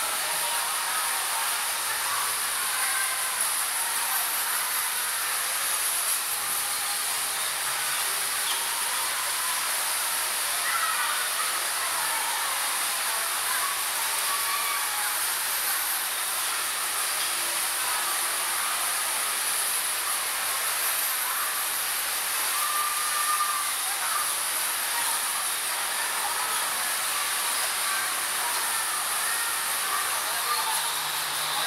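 Steady hiss of electric bumper cars running in an indoor ride hall, their poles sliding along the metal ceiling, with faint distant voices.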